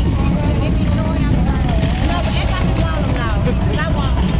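A parade bus passing close by, its engine giving a steady low rumble, with scattered crowd voices over it.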